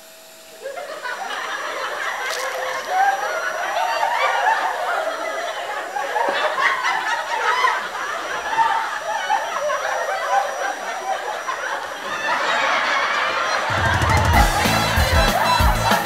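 Audience laughter: many voices laughing together. About fourteen seconds in, music with a heavy beat comes in over it.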